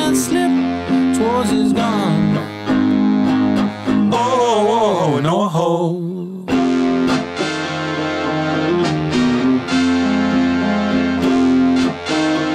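Live indie-rock band music: an electric guitar riff with a Nord Electro 6D keyboard underneath. About four seconds in, a wavering melodic line slides downward, then the low end drops out briefly before the full band comes back in.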